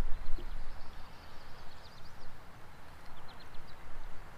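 Outdoor river ambience: wind rumbles unevenly on the microphone, loudest at the start, with clusters of faint, quick, high bird chirps.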